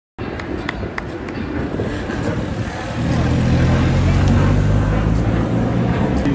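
Road racing bicycles passing close by at speed, with a few sharp clicks over tyre and wind noise. About three seconds in, a steady low hum starts and the sound grows louder.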